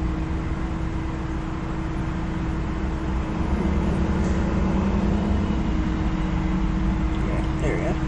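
Steady low rumble with a constant hum inside a car's cabin, typical of the car idling.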